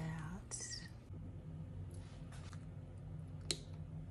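A short, soft voiced murmur from a woman at the start, then quiet whispery sounds over a steady low hum, with one sharp click about three and a half seconds in.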